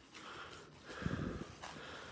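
Faint rustling and crinkling of a disposable diaper being handled and pressed by hand, a little louder about a second in.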